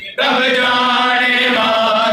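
Men's voices chanting a noha, a Shia mourning lament, in a long sung line. It starts after a brief break at the very start.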